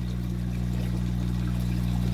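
Water pouring from a bell siphon's outlet into an aquaponics fish tank: the siphon has started and is draining the gravel grow bed. A steady low hum runs underneath.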